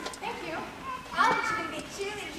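Young actors' voices speaking on stage, indistinct and distant as heard from the audience, with a louder exclamation a little past halfway.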